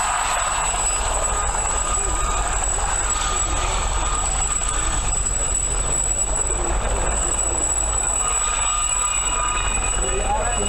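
Steady wind rumble on the microphone, with a distant helicopter running and a thin, steady high whine over it.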